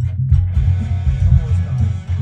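A multitrack rock song playing back over studio monitors: a pulsing bass line, with a fuller guitar part coming in about half a second in.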